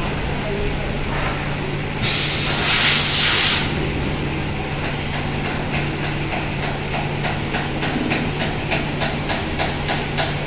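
CNC vertical machining center running with a steady hum. About two seconds in, a loud blast of compressed air hisses for about a second and a half. From about halfway, a regular ticking of about three a second begins as the spindle head comes down with a tool toward the part.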